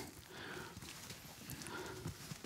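Faint footsteps on a hard floor as a man walks a few paces, over quiet room tone.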